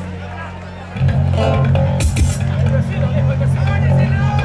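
Live ranchera band music: electric bass guitar and button accordion playing, getting louder about a second in.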